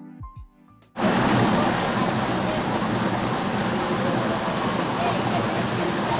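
Light background music that breaks off about a second in, replaced by the loud, steady rush of river water pouring over a small rocky cascade into a pool.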